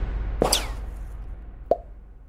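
Synthetic sound effects: a sharp sound about half a second in that sweeps quickly down in pitch, then a short pop that drops in pitch near the end. Both play over the fading low tail of the theme music.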